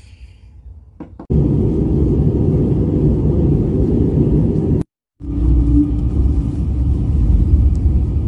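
Steady low rumble of an airliner cabin in flight, starting suddenly about a second in. It cuts out for a split second near the middle and comes back with a faint steady hum over it.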